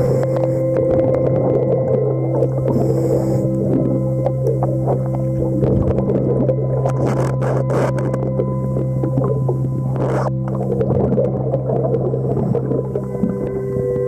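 Underwater sound: a steady hum of several held low tones, which shift to new pitches near the end, over constant crackling, with two short rushes of noise around the middle.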